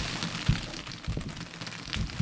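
Loose crushed glass sliding off a tilted resin-coated canvas and pattering onto the table, a fine trickling hiss that thins out, with a few dull knocks, the loudest about half a second in.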